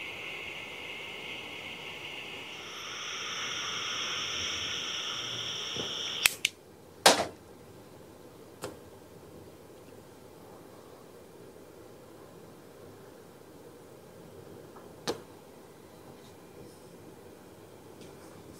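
Butane torch lighter's jet flame hissing steadily as it toasts the foot of a cigar, growing louder about two and a half seconds in, then cut off with a sharp click about six seconds in. A second click follows about a second later, with a couple of faint clicks after that.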